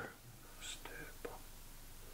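A faint, breathy, whisper-like voice sound about half a second in, then a few soft short clicks; the rest is quiet room tone.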